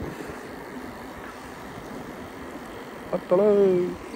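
Steady rushing noise of wind and tyres as a bicycle coasts downhill on a wet road. A man's voice calls out briefly near the end.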